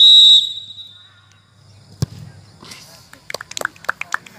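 Referee's whistle, one short blast at the start, signalling the penalty. About two seconds later comes a single sharp thud of the ball being kicked, followed by scattered shouts from onlookers.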